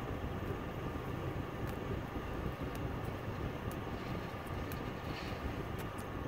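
Steady low hum and hiss inside a parked car's cabin, with a few faint clicks.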